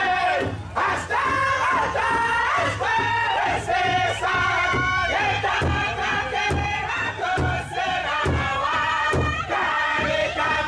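A group of voices singing a chant over a steady drumbeat.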